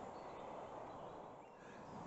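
Faint outdoor garden ambience with a faint bird chirp or two about one and a half seconds in.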